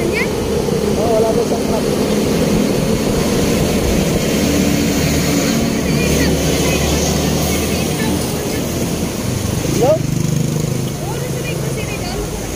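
Motorcycle engine idling steadily in street traffic, with a brief rising whine about ten seconds in.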